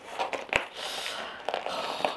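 Corrugated cardboard wrapping being handled and pulled open around a potted plant, a dry rustling and scraping, with one sharp click about half a second in.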